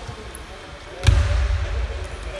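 A single sharp thud about a second in, over indistinct voices in a large gym hall.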